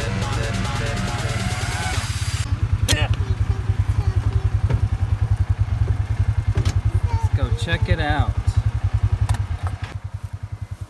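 Background music until about two and a half seconds in, then a Polaris Ranger 500 side-by-side's single-cylinder engine idling with a fast, even pulse. A few knocks and a brief voice come over it.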